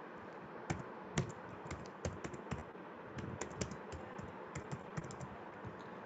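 Typing on a computer keyboard: a run of fairly faint, irregular key clicks.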